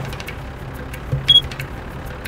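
Road noise inside a moving SUV's cabin: a steady low engine drone with scattered clicks and rattles, and one short high beep about a second and a quarter in.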